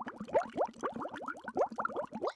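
Cartoon bubbling sound effect: a quick run of short rising bloops, about seven a second.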